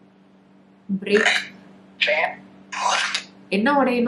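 Necrophonic ghost-box app playing through a phone's speaker: a steady low hum under four short bursts of chopped static and garbled voice fragments, the last one near the end the most voice-like.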